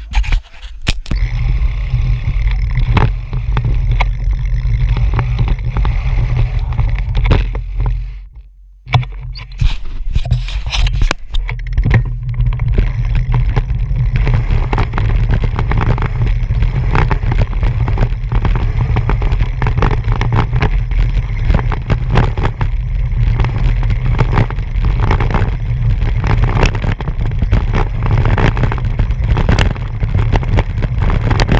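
Bicycle rolling fast down a rough dirt road: wind rumbling on the handlebar-mounted camera's microphone over tyre noise on the dirt, with frequent rattles and knocks from the bumps. There is a brief lull about eight seconds in.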